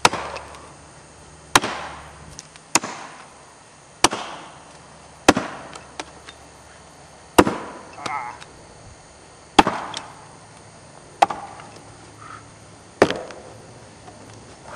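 Axe chopping into an upright wooden block, a standing-block chop: nine sharp strikes, roughly one every second and a half, each with a short ring.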